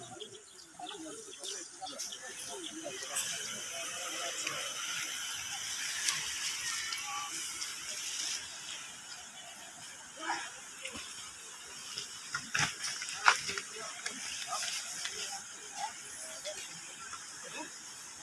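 Indistinct voices of a crowd of people talking outdoors over a steady hiss, with a few sharp clicks or knocks a little past the middle.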